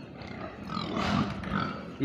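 Grown fattening pigs grunting in their pen, with an irregular sound that is loudest about a second in.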